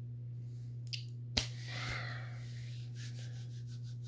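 A steady low hum, with a small click about a second in, a sharper click a moment later followed by a soft hiss-like rush, and a few faint ticks near the end.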